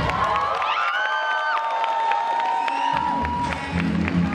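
Audience cheering and screaming while the backing music's bass drops out, with a long high note held over the crowd. The music's low beat comes back in about three seconds in.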